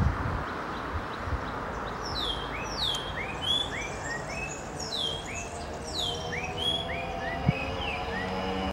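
Small birds calling over a steady rush of wind in the trees. From about two seconds in come repeated short chirps, some sweeping down and some hooking up, two or three a second.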